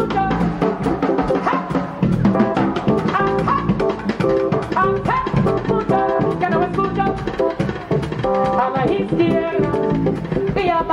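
A live jazz quartet of drum kit, bass and piano playing a steady groove with an Afrobeat feel, the drums keeping up a dense run of strokes throughout.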